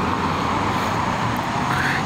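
Car driving along the road: steady tyre and engine noise.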